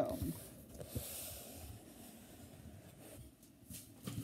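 Faint rustling handling noise from a phone or tablet being moved, with a soft knock about a second in.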